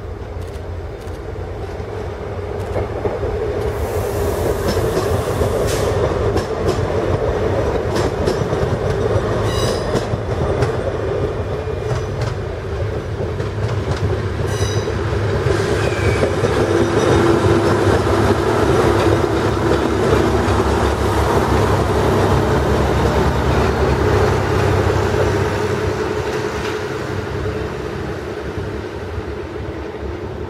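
Diesel railcars running through a station: a steady engine hum swells to its loudest in the second half and fades near the end. Wheels click over rail joints and points, with two brief high wheel squeals near the middle.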